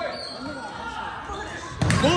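Players and spectators talking in a gym, then one sharp, loud hit of a volleyball near the end, as it is struck at the net.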